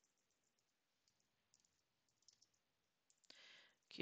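Near silence with a few faint, scattered computer keyboard key clicks as text is deleted and retyped; a brief soft rush of noise near the end.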